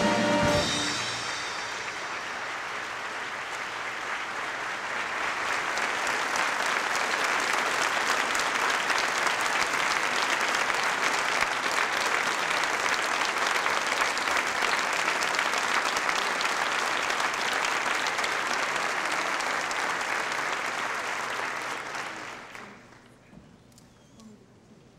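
A large theatre audience giving a standing ovation: dense, steady applause that builds over the first few seconds, holds for nearly twenty seconds, then dies away near the end. Music ends about a second in.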